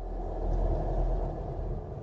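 A deep, low rumbling whoosh from the soundtrack's sound design; it swells over the first half second, holds, and eases slightly near the end.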